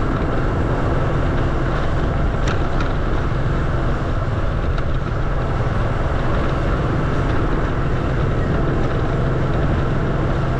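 Steady rumble of riding along a street, heavy in the low end and mixed with wind on the microphone, with a couple of faint ticks about two and a half seconds in.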